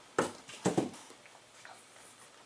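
Two short knocks about half a second apart, from a laptop being handled and set down on a desk.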